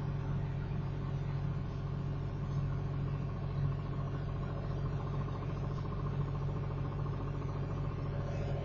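Steady low hum of background noise, unchanging throughout.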